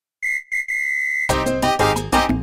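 A whistle blown with two short blasts and then one longer held blast on a single high tone, counting in the song. About a second in, a salsa band with percussion kicks in.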